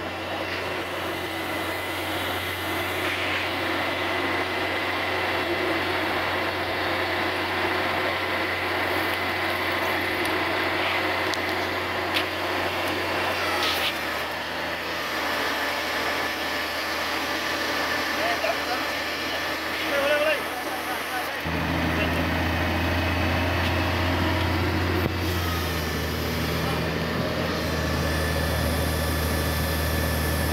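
Lorry's diesel engine running steadily to drive a truck-mounted knuckle-boom crane's hydraulics, its hum dropping a little about halfway through, then rising and running louder from about two-thirds of the way in as the engine speeds up under the crane's work.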